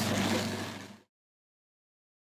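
Drum carder running with a steady hum, a burnishing brush pressed against the fibre on its spinning main drum. The sound fades over the first second and then cuts off abruptly.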